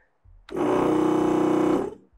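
A small onboard air compressor motor running briefly: it starts about half a second in, runs steadily with a fast buzzing pulse, and cuts off just before the end.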